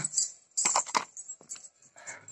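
A short cluster of light, sharp clicks and rattles about half a second in, followed by a few single clicks near the middle.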